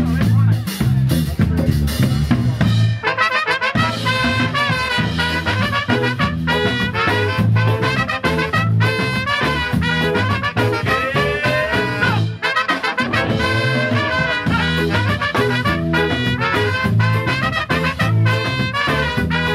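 Live band with electric bass, electric guitar and drum kit, joined about three seconds in by a horn section of two trumpets and a saxophone playing the melody in unison.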